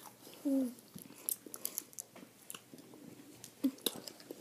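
Scattered lip smacks and tongue clicks of people sucking on sour hard candy. A short falling "mm" hum comes about half a second in, and another brief one near the end.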